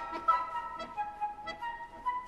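Concert accordion (a Scandalli) playing a quiet, quick line of high single notes as the soloist in a concerto with orchestra.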